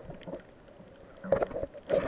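Water sloshing and splashing, heard muffled from just under the surface. It is faint for the first second, then comes in two louder splashy bursts with knocks, about a second apart.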